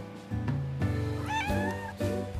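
A white Turkish Angora cat meows once, a call of about a second that starts about a second in and rises in pitch before levelling off.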